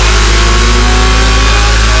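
Dubstep track: a loud, steady distorted synth bass held as a sustained, engine-like drone, layered with a hissing wash above.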